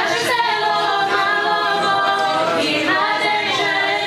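Unaccompanied group of voices singing a slow Orthodox church hymn in long held notes, with a new phrase beginning near the end.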